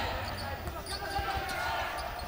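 Basketball being dribbled on a hardwood court, a few short thuds over the murmur of the arena crowd and faint voices.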